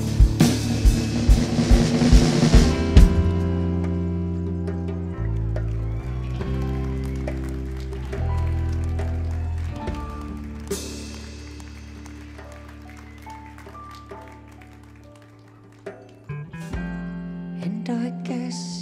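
Live rock band music. Drums and cymbals pound steadily for about three seconds. Then long held bass and chord notes ring out and slowly fade, with a cymbal swell near the middle. A quiet new guitar part comes in near the end.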